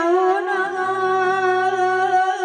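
A male devotional singer holding one long, steady sung note into a microphone, with a low steady drone joining underneath about half a second in.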